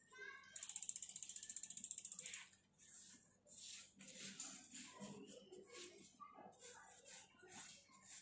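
Mountain bike's rear freehub ratcheting as the rear wheel spins on the stand: a fast, even run of clicks lasting about two seconds. After it come irregular short rubbing strokes of a wet sponge wiping the tyre and rim.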